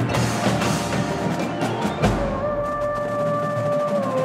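Indoor drumline, battery drums and front-ensemble mallet percussion, playing a run of rapid strikes. About halfway through comes a heavy low hit, then a held note with lighter taps over it.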